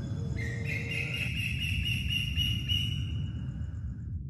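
Atmospheric intro soundscape: a low rumbling wash under sustained high ringing tones that step up in pitch within the first second, then fade out near the end.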